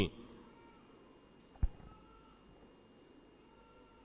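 A man's amplified voice stops right at the start. Then there is faint room tone with a single sharp knock about one and a half seconds in, and two faint, brief high tones.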